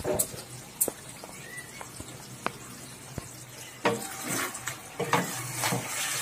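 Chicken and potato curry sizzling in a kadai, with a few light taps. From about four seconds in, a spatula stirs and scrapes through the pieces.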